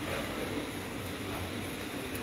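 Steady background room noise: an even hiss with a faint low hum and no distinct events.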